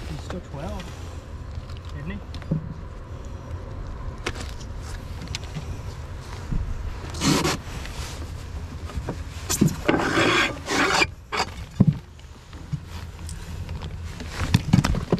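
Rustling, rubbing and scraping from handling a freshly caught smallmouth bass and gear on a carpeted boat deck, loudest about seven seconds in and again between nine and eleven seconds, over a steady low rumble.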